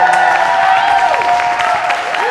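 Audience applauding and cheering, with several voices calling out in rising-and-falling whoops over the clapping.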